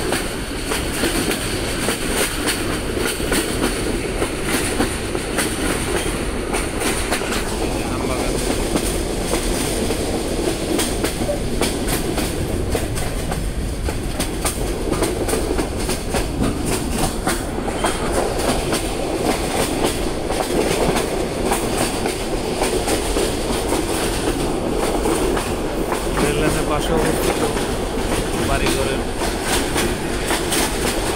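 Train running steadily, heard from inside a carriage: continuous rumble with the clickety-clack of the wheels on the rail joints.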